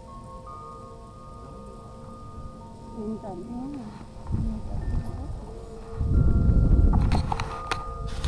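Wind chimes ringing: several clear metal tones struck at different moments and left to ring on. About six seconds in, a loud rumbling noise with a few clicks covers them.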